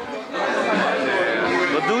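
People talking and chattering close by, several voices overlapping.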